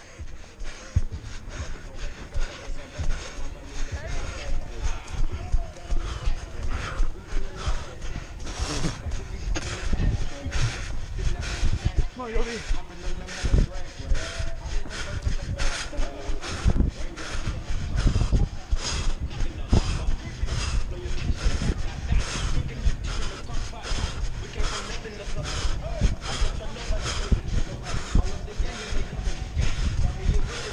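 A runner's footfalls on a dirt trail in a steady, even rhythm, each stride jolting a body-worn camera, with clothing and movement rumbling against the microphone.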